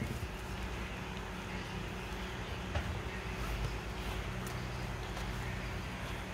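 Faint rustling and handling noise of nylon webbing and sailcloth being pulled through a sail grommet, over a steady low background hum, with a small click near the middle.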